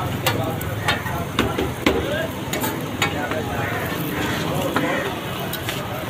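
Parathas sizzling on a large flat griddle while a metal spatula scrapes and taps against it, giving irregular sharp clicks over a steady hiss.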